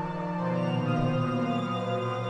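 Experimental synthesizer drone music: a dense, sustained chord of many steady held tones, its low notes shifting to a new pitch about half a second in.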